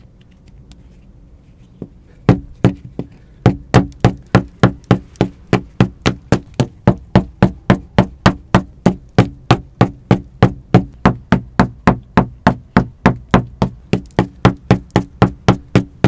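Repeated hard blows against an adobe brick wall, chipping a hole through the tough sun-dried brick, at an even pace of about three knocks a second starting about two seconds in.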